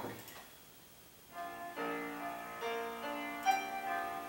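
Piano chords played back through laptop speakers, starting about a second in after a moment of near silence.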